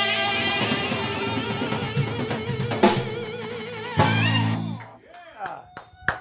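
Live band playing soul music on electric guitar and drums, with wavering held notes, then a final accented chord about four seconds in that rings briefly and dies away as the song ends.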